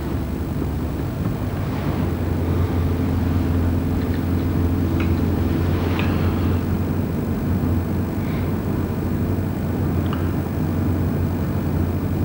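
Steady low engine and road drone heard from inside a moving motor vehicle's cabin, with no change in pitch or level.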